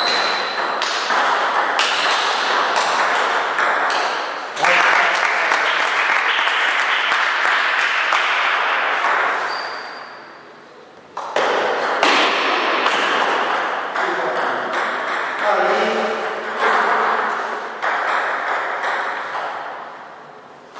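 Table tennis rally: the celluloid ball clicks sharply off rubber paddles and the table in quick succession, echoing in a hard-walled hall, with voices in the background. The sound runs as two rallies with a short lull about ten seconds in.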